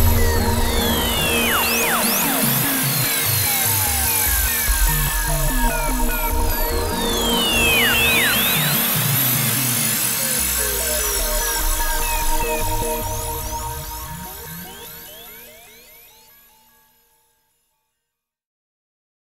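Electronic acid dance track: layered synth lines with repeated sweeps gliding down in pitch over a deep bass. The whole mix fades out to silence in the last few seconds.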